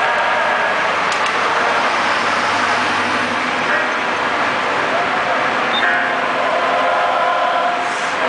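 A car in motion, heard from inside the cabin: steady engine and road noise at cruising speed.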